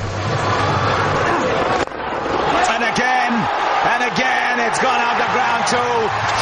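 Cricket stadium crowd noise, with many short whoops from spectators that rise and fall in pitch over a steady din. They set in after a sudden cut about two seconds in.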